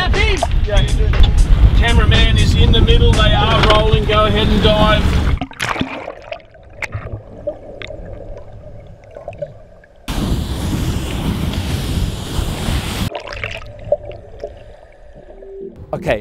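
Heavy low rumble of wind and boat noise with people's voices on a small motorboat, cutting off about five seconds in to quiet underwater sound with scattered clicks and crackles. About ten seconds in a loud rushing hiss of bubbles sets in and stops abruptly after about three seconds.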